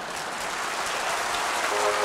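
Audience applauding, slowly growing louder. A band starts playing near the end.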